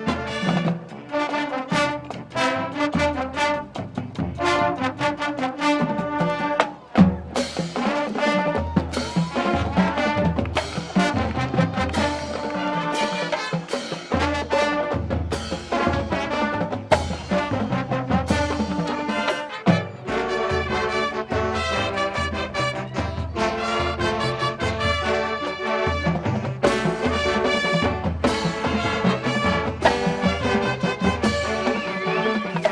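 High school marching band playing a brass-led piece, trombones and trumpets over low bass notes and regular drum hits, with a brief break about seven seconds in.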